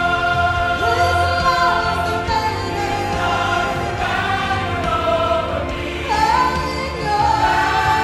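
Female soloist singing a gospel song into a handheld microphone, backed by a church choir, with long held notes that slide up and down in pitch.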